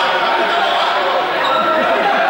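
Many young people talking at once, a steady overlapping chatter that echoes in a large sports hall.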